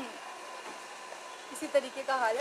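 A steady, even hiss of background noise with no distinct source, in a pause between speech; voices start again near the end.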